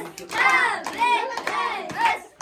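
A small group of people clapping their hands while voices sing together.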